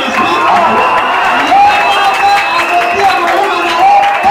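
A large congregation of many voices calling out and cheering at once, with some scattered clapping.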